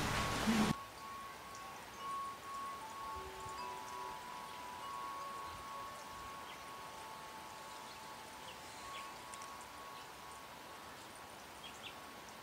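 A bell or chime ringing on, a few close tones that waver and die away slowly over about ten seconds, after a brief loud noise that cuts off within the first second. Faint ticks and rustles lie under it.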